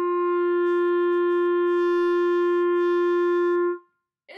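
Selmer Paris Présence B-flat clarinet holding its open G, which sounds as concert F, as one long steady note that stops just before the end. It is played as a tuning check and reads a hair sharp.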